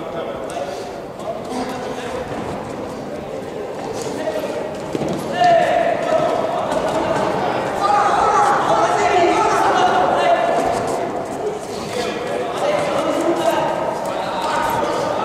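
Voices calling out in a large echoing sports hall around a boxing ring, louder from about five seconds in, over scattered dull thuds from the boxers' gloves and footwork in the ring.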